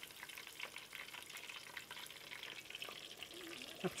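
A steak deep-frying in a pot of hot rendered beef fat: a faint, steady crackling sizzle made of many small pops.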